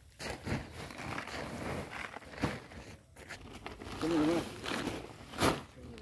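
Chopped silage being scooped and dropped into a woven polypropylene sack: irregular rustling, scraping and crunching of the fodder against the tool and sack, with a sharper knock about five and a half seconds in.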